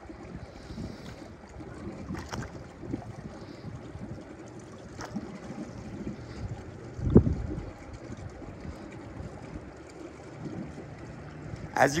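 Wind on the microphone over gently lapping pool water, with one louder low buffet about seven seconds in.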